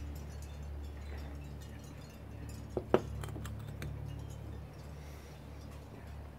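Beer glass set down on a glass-topped table: two sharp clinks just before three seconds in, over a low steady hum.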